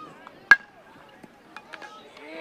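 A metal baseball bat hitting a pitched ball: one sharp ping with a short ring about half a second in.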